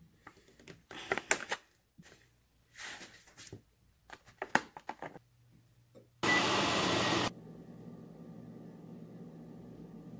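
Kitchen knife slicing a block of cheese over a glass dish, with the slices dropped into a bowl: scattered clicks and knocks. About six seconds in, a loud rushing noise lasts about a second, and a steady machine hum with faint tones follows.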